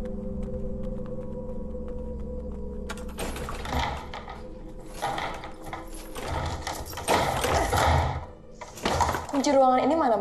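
A low, ominous drone of held tones, then a locked wooden door rattled and yanked by its handle in a run of loud bursts that starts about three seconds in and ends about a second before the end. A brief voice is heard near the end.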